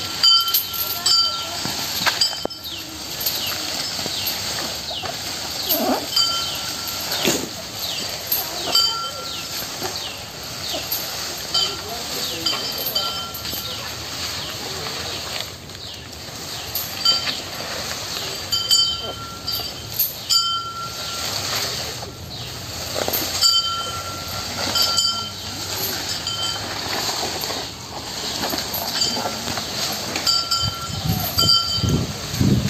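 An Asian elephant feeding on banana leaves and stems: rustling leaves and crunching, snapping stems. Short metallic clinks that ring at a fixed pitch recur every second or two.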